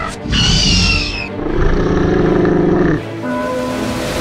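Dinosaur roar sound effects: a high, gliding screech, then a deep, rough roar, with background music and steady notes in the last second.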